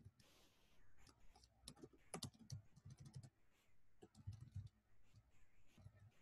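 Faint, irregular keystrokes on a computer keyboard as text is typed and edited, in short clusters of quick clicks.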